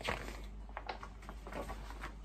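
Paper pages of a picture book being turned and handled: a rustle at the start, then a few short crackles.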